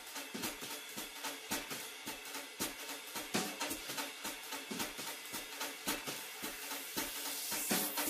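Jazz drum kit playing quick strokes on cymbals, hi-hat and drums, fairly quiet, with a cymbal swell building near the end.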